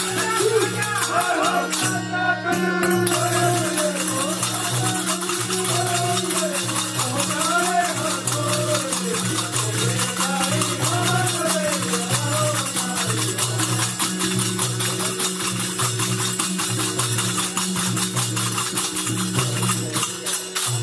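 Live devotional song: a harmonium holding steady chords in rhythm under a singing voice, with continuous rhythmic hand clapping and jingling hand percussion keeping time.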